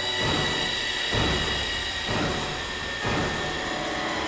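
Dramatic background score: a sustained high droning tone over a dense low bed, with a low beat about once a second.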